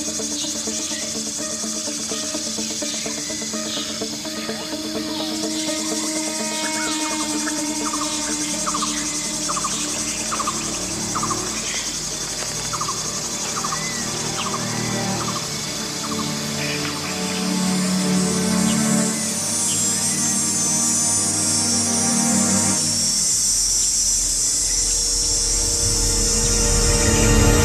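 Low, sustained music runs under a steady insect drone. Midway through, a bird repeats a short call about once a second for several seconds. Near the end the music swells with a deepening low rumble.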